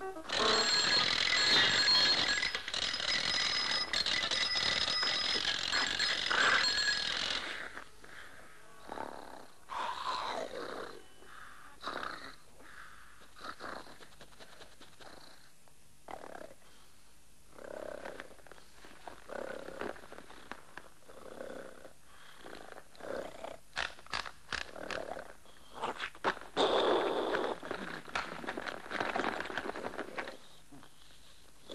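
Cartoon soundtrack: about seven seconds of loud music, then a sleeping cartoon cat's snoring, pulsing about every two seconds, and a loud ringing burst near the end from the bedside alarm clock.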